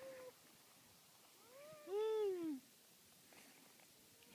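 A single drawn-out wordless vocal cry from a person, about halfway through, rising and then falling in pitch and lasting about a second; otherwise faint background hiss.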